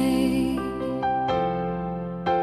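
Piano accompaniment to a slow ballad between sung lines: held notes, with a few new ones struck about a second in.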